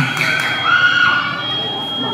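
Spectators' voices chattering and shouting around a basketball court. A thin, steady, high-pitched tone comes in about a second and a half in and holds.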